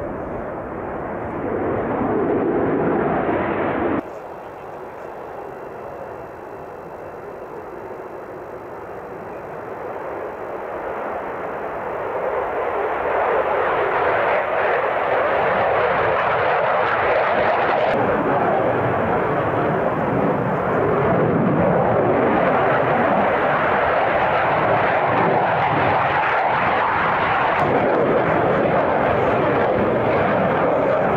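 F-15 fighter jet's twin engines running loud and steady. The noise drops suddenly about four seconds in, then builds over several seconds and holds loud.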